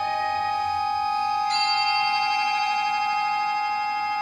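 Contemporary chamber ensemble of recorder, panflute, viola, accordion and percussion playing a slow, sustained texture of long steady tones. A new high ringing tone enters sharply about a second and a half in.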